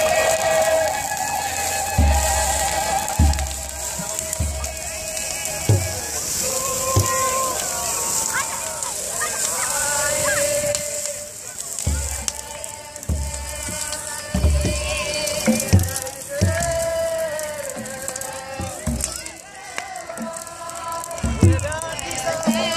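Ethiopian Orthodox church singing by a group, with long-held chanted notes, accompanied by irregular deep beats of a large church drum.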